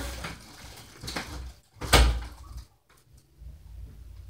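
Two bumps, a lighter one about a second in and a louder thud about two seconds in, followed by faint low rumbling.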